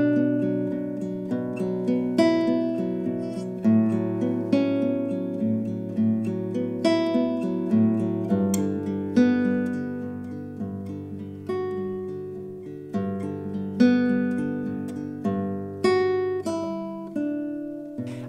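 Nylon-string classical guitar fingerpicked in a steady eight-note arpeggio pattern through a chord progression from B minor to G major 7, with the middle- and ring-finger notes accented by rest strokes (tocco appoggiato). The bass note changes about eight seconds in.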